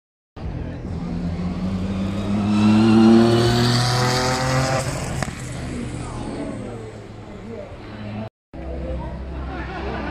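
Race car accelerating hard past on a hillclimb course, its engine note climbing steadily in pitch. It is loudest about three seconds in and fades as the car moves away.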